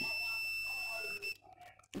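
Digital multimeter's continuity buzzer giving one steady high beep with the probes on the generator's stator winding leads, which shows the winding has continuity. The beep cuts off suddenly a little over a second in as the probes come away.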